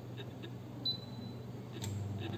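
Touch control panel of a Teka combi microwave oven giving one short high beep as start is pressed, over a steady low hum.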